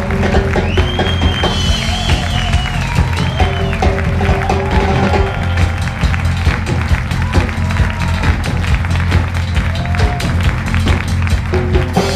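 A big band playing a vamp with a steady bass and drum groove underneath. On top, the saxophone section plays a short feature of bending, sliding lines.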